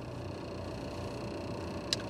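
Steady low hum of a car idling, heard from inside the cabin, with two short sharp clicks near the end.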